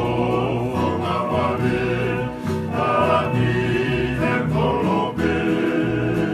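Tongan kalapu (kava-club) song: a group of men singing together in harmony over electric bass and guitar, with the bass notes changing every second or so.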